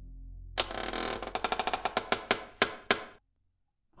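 Sound effect of a creaking floorboard: a long creak made of a run of sharp clicks that starts suddenly about half a second in, slows and thins out, and stops shortly after three seconds. A low ambient music drone plays before it.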